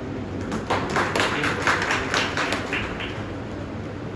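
A small audience clapping briefly: hand claps start about half a second in and die away about three seconds in.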